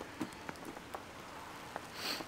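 Falling snow faintly pattering on a coat hood and jacket, a few soft ticks over a steady hiss.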